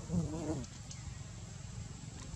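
A macaque gives one short wavering call, about half a second long, just after the start. A steady low rumble runs underneath.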